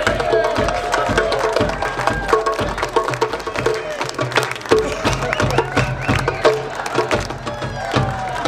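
Live band music with a drum kit and busy, sharp percussion strokes keeping a quick, even beat under sustained melody notes.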